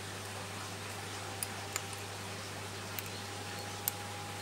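Steady low hum and hiss of background equipment noise, with a few faint light clicks from hands handling a rubber band, toothpick and ceramic frag plug.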